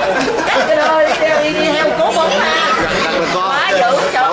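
Several people talking over one another in a group, with no single voice standing out.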